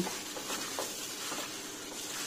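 A plastic-gloved hand mixing cut raw eel pieces in marinade in a bowl: faint wet squelching of the fish with the rustle of the plastic glove, and a few soft ticks.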